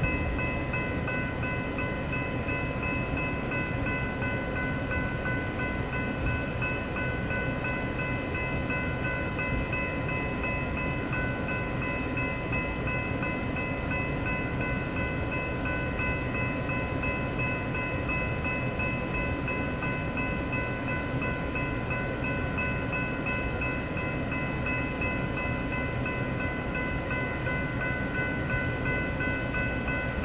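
A long Union Pacific coal train's loaded hopper cars rolling past: a steady rumble of wheels on rail, with several high-pitched tones held steady throughout.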